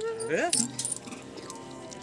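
A short voice sound at the start, then a brief metallic jingling about half a second in. After that comes music with steady held notes.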